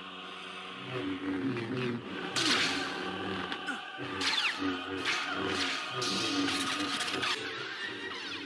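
Film soundtrack of a lightsaber duel: sweeping orchestral music with choir, broken by several sudden lightsaber clashes and swinging swooshes over the steady hum of the blades.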